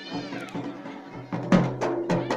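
Live traditional folk music: a droning wind-instrument melody with a high, wavering line. About one and a half seconds in, loud, fast barrel-drum (dhol) strikes join it at roughly four a second.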